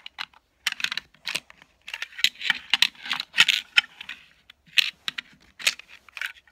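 Hard plastic clicking and clattering as a small plastic coin-trick holder is handled and its pieces slid apart: an irregular run of quick clicks, busiest in the middle.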